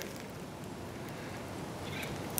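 Faint, steady outdoor background noise with no distinct sound event.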